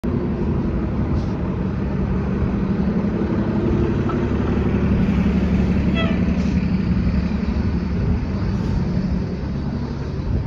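Diesel-electric hybrid transit bus (a 2009 NABI 40-LFW) running close by with a steady low drone that eases near the end. A brief high squeal comes about six seconds in.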